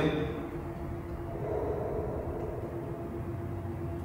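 A low, steady hum with a few faint held tones.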